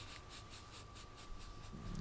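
Quiet pause in a conversation: faint room tone with a thin steady hum and light scratching that repeats about six times a second.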